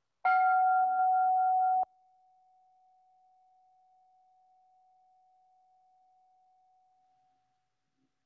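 A meditation bell struck once to open a minute of silent prayer, ringing at one steady pitch. It is loud for about a second and a half, then drops suddenly to a faint ring that fades out over the next five seconds.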